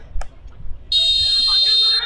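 Referee's whistle blown in one long, loud blast signalling the kickoff, starting about a second in, with faint players' voices around it.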